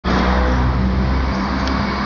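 Road traffic noise: a loud, steady low rumble under a hiss, easing slightly after about a second.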